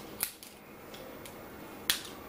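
Crab leg shells cracking as they are snapped apart by hand: two sharp cracks about a second and a half apart, with a few fainter ticks between them.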